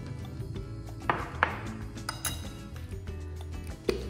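Background music with a few sharp clinks of a metal fork against a ceramic plate, the loudest about a second and a half in and another near the end.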